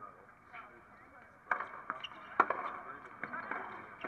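Tennis ball struck by rackets at the start of a point: a sharp hit about a second and a half in, then a louder one about a second later, followed by a few lighter knocks.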